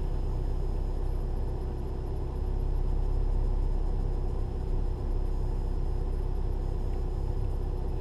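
VW car engine idling in park, heard from inside the cabin as a steady low rumble while the DSG transmission runs its basic-settings adaptation. The level dips slightly about two seconds in and swells again a moment later.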